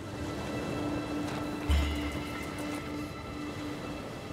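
Background music: a held steady note with a few faint higher tones, and a single deep bass hit a little under two seconds in.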